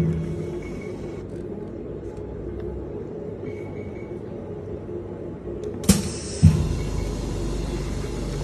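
Meltblown fabric filtration efficiency tester running with a steady low hum. Two short knocks come about six seconds in.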